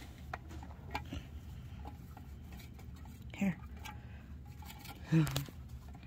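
Small, scattered clicks and scratches of a baby chinchilla's feet moving on the steel pan of a kitchen scale, over a low steady hum.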